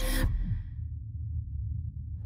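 A woman's short breathy exhale, like a sigh or soft laugh, right at the start, fading within half a second. After it, a low steady rumble continues underneath.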